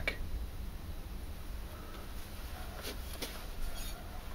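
Quiet room tone: a low steady hum with a few faint clicks about three seconds in.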